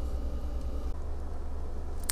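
A steady low hum with faint hiss and no distinct event. The hum's tone shifts slightly about a second in.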